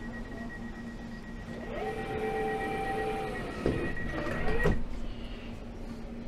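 London Overground Class 710 train's sliding passenger doors closing: a steady high warning tone sounds, joined for a second and a half by a lower tone, then the doors knock shut twice, the louder knock about four and a half seconds in, and the tone stops.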